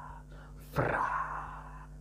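A man's breathy, whispered ad-lib in imitation of a rapper: a sudden exhaled 'hahh' about three quarters of a second in, fading away over about a second. A steady low hum runs underneath.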